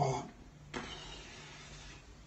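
A man's wordless vocal sound trails off in the first moment, then faint room noise with a low steady hum.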